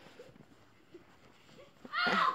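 Faint, brief voices of children playing in the snow, then near the end a child's loud, high shout begins.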